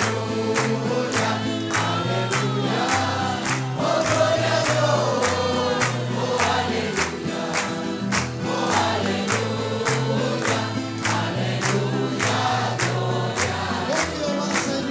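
A congregation singing a worship song together over band accompaniment, with a stepped bass line and a steady beat about twice a second. Hands clap along.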